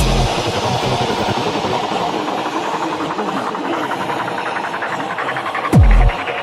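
Breakdown in a fast, hard electronic dance track: the kick drum drops out, leaving a dense, rattling noise texture without bass, and one deep kick drum hits just before the end.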